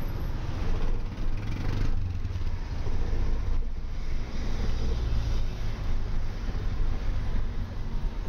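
Street traffic: motor vehicles running close by, a continuous low rumble that swells and eases.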